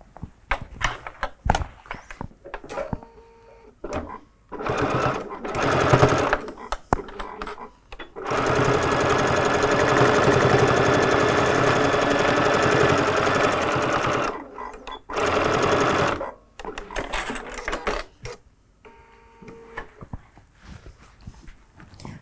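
Electric sewing machine stitching through layers of quilted fabric, running in short bursts, then steadily for about six seconds near the middle, then briefly again, with small handling clicks between the runs.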